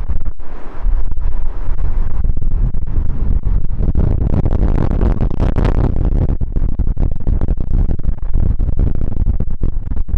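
Strong wind buffeting the microphone in gusts, over the low rumble of an Airbus A380 landing in a storm crosswind; the noise swells in the middle.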